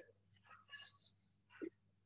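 Near silence with a few faint, brief squeaks of a marker writing on a whiteboard.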